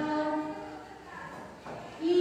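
Voices singing long held notes. One note fades out over the first second, then comes a quieter stretch with a brief sliding tone.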